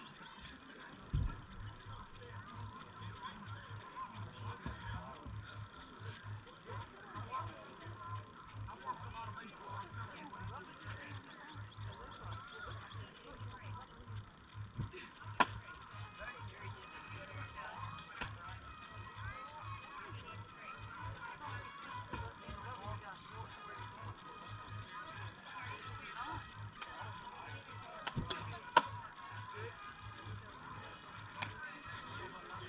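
Outdoor ballfield ambience: a low hum pulsing rapidly on and off under faint distant voices, broken by two sharp pops, one about halfway through and one near the end.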